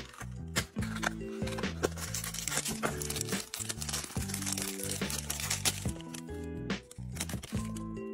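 Clear plastic wrapper crinkling and tearing as it is pulled open by hand to free a small toy figure, from about a second in until about six seconds in, over background music.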